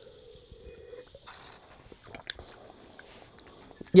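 A man sipping white wine from a glass: a short hiss of breath about a second in, then faint mouth and swallowing clicks.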